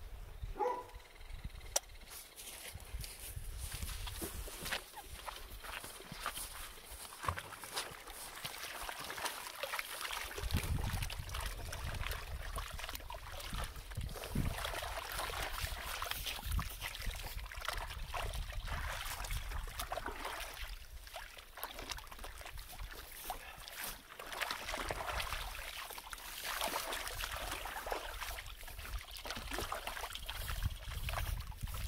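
Water sloshing and trickling in a plastic tub as a dog soaks in it and is rubbed down by hand, with wet, soapy fur being scrubbed.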